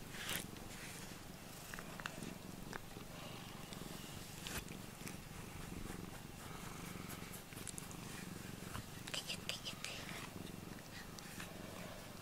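Domestic cat purring steadily close to the microphone while being groomed with a rubber brush. Now and then there are short scratchy strokes of the brush through its fur, most clearly about nine seconds in.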